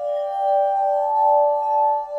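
Crystal singing bowls ringing, several long overlapping tones that pulse about twice a second as they beat against each other; a higher tone swells in about a second in.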